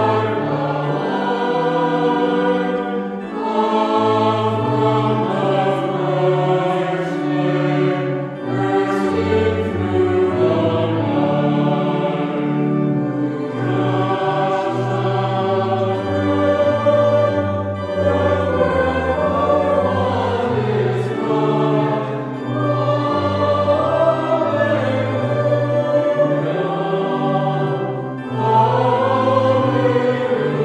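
A choir singing a hymn in several parts.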